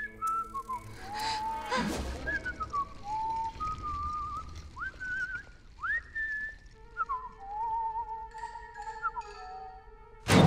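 A person whistling a slow tune in single clear notes, holding each one and sliding between them, over faint background music. A short thud about two seconds in.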